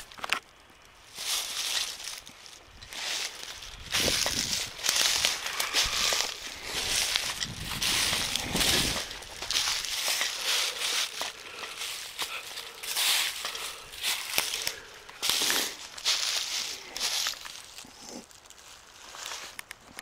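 Footsteps crunching through dry fallen leaves and twigs, an uneven series of crackling steps, busiest in the middle of the stretch.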